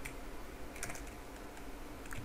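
Computer keyboard typing: a few faint keystrokes in quick succession.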